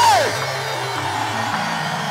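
Live electronic synthesizer holding low droning notes that step up in pitch, over a steady hiss of hall and crowd noise. A shouted voice slides down in pitch and breaks off right at the start.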